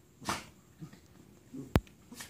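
Two dogs play-wrestling: a short breathy huff from one of them about a quarter second in, then a single sharp click near the end, the loudest sound.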